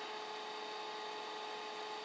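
Steady electrical hum with a couple of constant tones over a faint even hiss: room tone.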